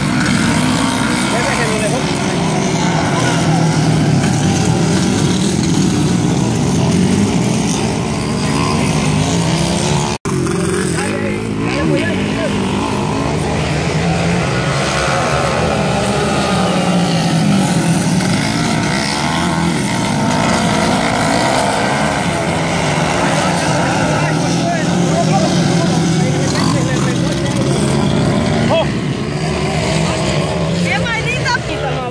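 Motocross dirt bike engines revving up and down as the bikes race through turns on a dirt track, with a brief cut-out about ten seconds in.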